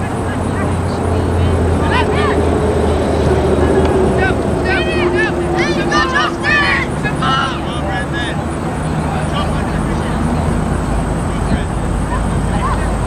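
Distant shouts and calls from soccer players and spectators, clustered in the first half, over a steady low rumble.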